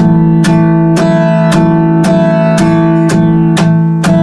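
Acoustic guitar strummed with a pick in a steady rhythm, about two strokes a second, eight in all. On each stroke the side of the picking hand strikes the bass strings at the bridge, adding a crisp percussive 'chat' click while the chord keeps ringing on the treble strings.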